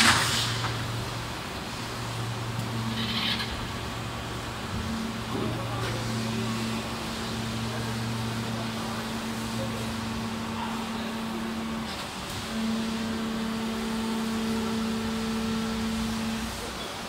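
Preform injection moulding machine working through a cycle with a 24-cavity can preform mould: a steady drive hum that changes pitch as the cycle moves between stages while the mould closes, with a loud burst of hiss at the start, a shorter hiss a few seconds in, and a couple of light clicks.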